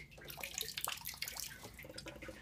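Water trickling and dripping off the wet top tray of a Gold Cube concentrator as it is lifted off, with many small irregular splashes into the tank below.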